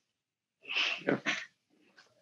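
A man's short, breathy vocal sound, under a second long, starting after about half a second of dead silence on the line.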